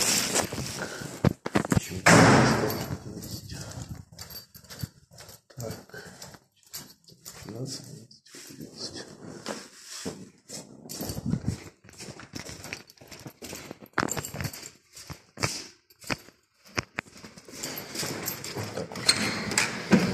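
Irregular knocks, clicks and rustling from a plastic carrier bag being carried and set down on a tiled floor by a door, with a louder rustle about two seconds in.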